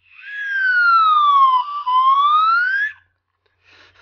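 A person whistling one note that glides down for about a second and a half, breaks briefly, then glides back up, ending about three seconds in.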